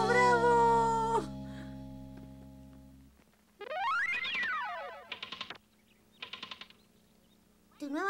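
Cartoon soundtrack: cheering voices over a held music chord that fades away over a couple of seconds. Then a cartoon sound effect glides up and back down, followed by two short bursts of rapid clicking, the winding of a wind-up robot's key.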